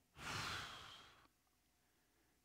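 A man's audible sigh into the microphone: one breathy exhale about a second long that trails off.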